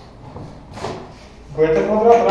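Speech: a pause with a short hiss about a second in, then a voice talking again from about one and a half seconds in.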